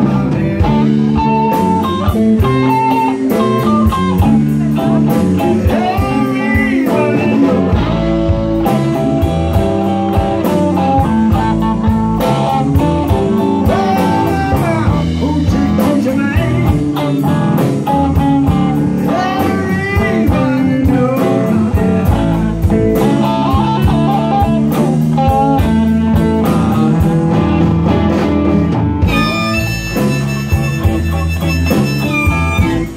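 Live electric blues band playing an instrumental break: an electric guitar leads with bent notes over bass guitar, a second guitar and drums.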